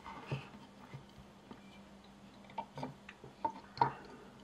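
Light clicks and taps of folding knives being shifted and set against each other on a wooden tabletop: a handful of scattered ticks, the loudest near the end.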